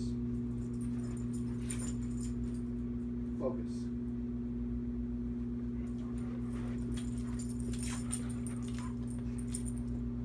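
A steady electrical hum runs under everything, with a dog's collar tags jingling now and then as it moves on its leash. One brief vocal sound comes about three and a half seconds in.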